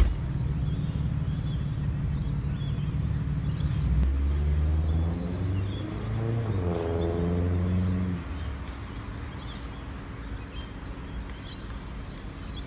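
A motor vehicle's engine running with a low rumble, louder from about four to eight seconds in with a pitch that rises and falls, then dropping away to quieter outdoor ambience with faint bird chirps.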